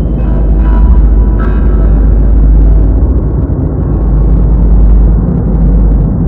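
Loud, steady low rumble with faint music over it.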